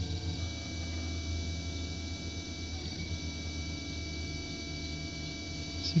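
Delta 3D printer running a print: a steady hum with a thin high whine, and faint tones that shift as the stepper motors move the print head.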